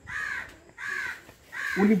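Crow cawing three times, each caw a short call that rises and falls, about three-quarters of a second apart.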